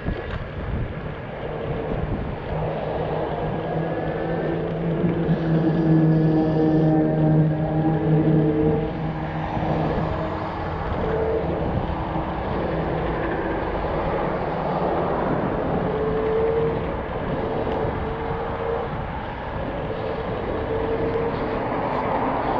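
Electric scooter in motion: a hub-motor whine in steady tones that drift slightly up and down with speed, over wind buffeting the microphone and rumble from the road.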